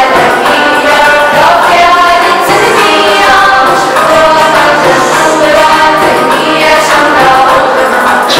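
A choir singing a song with musical accompaniment, voices held in long sustained lines.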